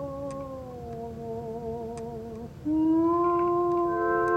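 The closing bars of an Italian ballad recording: one long held note with vibrato sinks slowly and stops. Then, about two-thirds of the way in, a louder steady note enters and grows into a sustained final chord.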